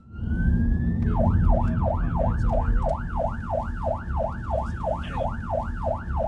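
Police car siren heard from inside the patrol car: a rising wail that switches about a second in to a fast yelp of about three sweeps a second, over the car's engine and road noise.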